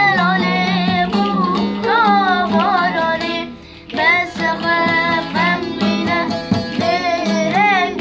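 A child singing a melody while strumming a saz (bağlama), a long-necked lute, with the steady string tones under the voice and children clapping along. The singing and playing break off briefly about halfway through, then start again.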